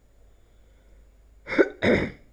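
A man coughing twice, two loud short coughs about a second and a half in.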